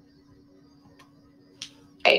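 Computer mouse clicking: two faint sharp clicks about half a second apart, the second louder, over a faint steady hum.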